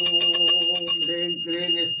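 Hand bell rung rapidly and without pause during a puja, a quick run of strikes with a steady high ring, under a man's voice chanting a repeated mantra.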